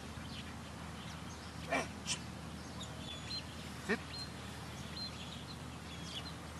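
Two short, loud animal calls about two seconds apart, over faint chirping of small birds and a low steady hum.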